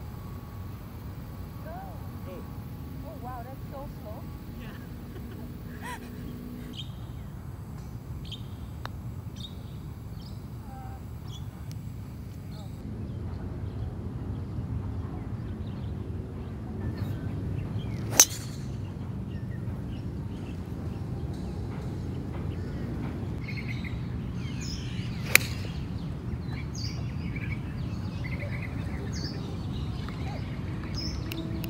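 Two sharp golf club strikes on the ball about seven seconds apart, first a driver off the tee and then an iron shot from the fairway, over an outdoor background of birds chirping.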